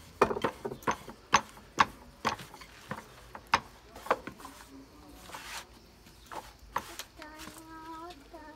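Wooden rolling pin rolling out pizza dough on a floured wooden board, giving irregular sharp clicks and knocks, thickest in the first half and thinning out later.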